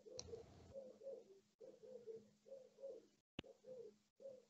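Faint cooing of a dove: a steady run of short, low coos, often in pairs, with a single sharp click a little after three seconds.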